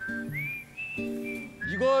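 Background music: a whistled melody stepping between a few high notes over plucked guitar chords. A man starts speaking near the end.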